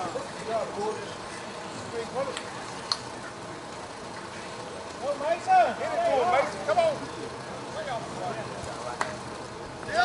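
Distant voices of players calling out across an outdoor field over a steady background haze, with a stretch of louder calls a little past halfway and one sharp click near the third second.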